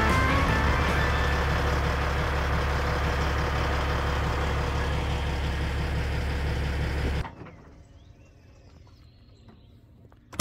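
A Freightliner semi truck's Detroit Diesel Series 60 engine idling with a deep steady rumble, then shut off about seven seconds in, after which it is fairly quiet.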